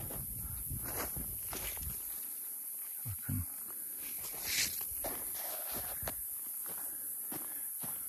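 Footsteps on dry, tilled soil and grass, with a brief rustle of walnut leaves about halfway through as a branch is handled.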